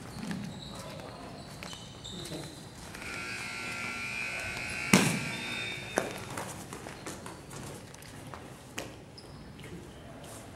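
Wrestlers grappling on a gym wrestling mat: a sharp thud of a body hitting the mat about halfway through, the loudest sound, then a smaller thud a second later. A high, steady squeak lasts about two seconds just before the first thud.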